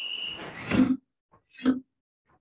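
An alarm-clock timer sounds a short high beep to start the interval, then sharp grunting exhalations follow about once a second, in time with the karate punches. The loudest grunts come just before one second and again near the end.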